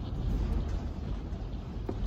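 Strong wind buffeting a camper van, heard from inside as a steady low rumble.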